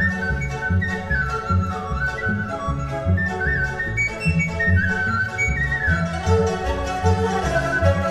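Chinese bamboo flute (dizi) playing a lively, ornamented melody with quick slides between notes, over a rhythmic accompaniment with a strong low bass.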